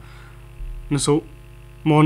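Steady low mains hum in a pause between a newsreader's phrases, growing a little louder about half a second in. A short spoken syllable comes about a second in, and speech resumes near the end.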